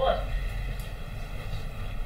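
The tail of a woman's spoken word right at the start, then a steady low hum of background room noise.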